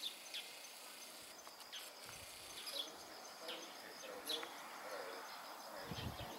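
Faint outdoor ambience: a steady, high-pitched insect drone with several short, sharp bird chirps scattered through it.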